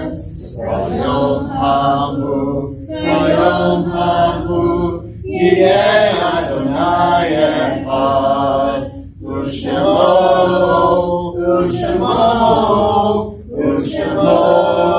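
Voices chanting a liturgical prayer in phrases two to four seconds long, with short breaks between them.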